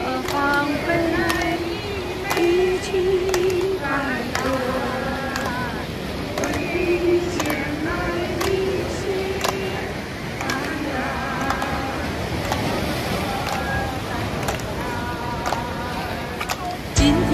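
Several women's voices talking and calling out over the steady wash of surf breaking on the rocks.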